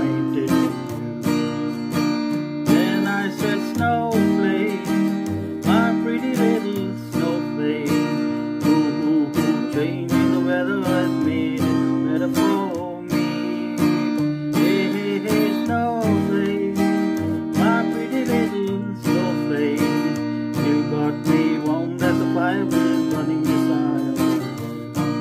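Acoustic guitar strumming steady chords in an instrumental passage between verses, with a melody line that glides and wavers over the chords.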